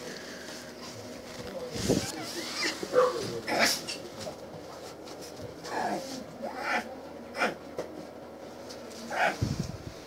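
Young bear cub crying in short calls, about half a dozen of them spread over several seconds, some rising in pitch.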